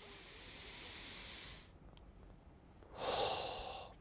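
A man taking one slow, calm breath: a soft inhale through the nose for nearly two seconds, then, about three seconds in, a louder, shorter exhale through the mouth.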